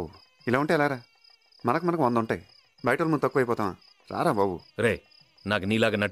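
A man's voice speaking in short, emphatic phrases with brief pauses between them, over a faint, steady, high-pitched background tone.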